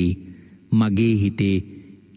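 Speech only: a Buddhist monk preaching in Sinhala, with a brief pause before he goes on speaking, under a second in.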